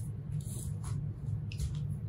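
Quiet room tone with a steady low hum, and a few faint soft rubs and taps from a hand moving over the mixer's rear panel jacks.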